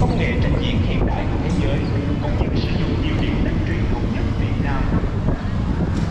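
Steady low rumble of a moving vehicle and wind noise on the microphone, with indistinct voices over it.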